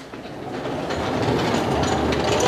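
A steady rumbling and rattling noise, like a train running on rails, swelling up out of silence and growing louder.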